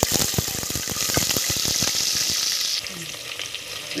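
Sliced shallots and red chilli frying in hot oil in a pressure cooker, sizzling loudly with many small crackles. The sizzle eases somewhat about three seconds in.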